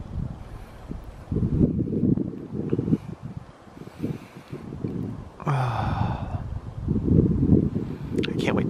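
Wind buffeting the microphone in uneven gusts, a low rumble that comes and goes. About five and a half seconds in, a short, unidentified sound with a low falling tone cuts through.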